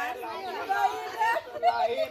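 Several people chattering at once in Spanish, their voices overlapping so that no clear words stand out.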